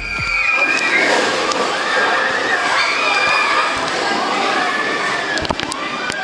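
Roller-coaster riders screaming, several voices held and wavering over each other, above a steady rushing noise. The ride is a Gerstlauer Euro-Fighter coaster.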